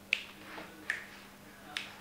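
Three short, sharp clicks a little under a second apart, the first the loudest.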